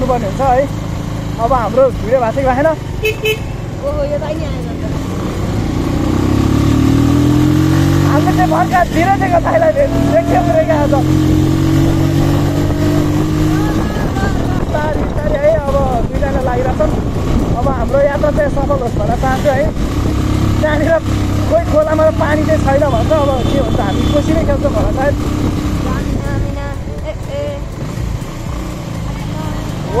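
Motorcycle engine running as the bike rides through town traffic, its pitch climbing as it accelerates a few seconds in and then holding steady before easing off, with voices talking over it.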